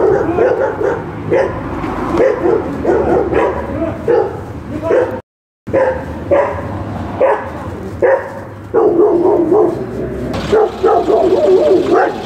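Stray dogs barking aggressively and repeatedly as they go for a man, in quick runs of barks, with a brief break in the sound about five seconds in.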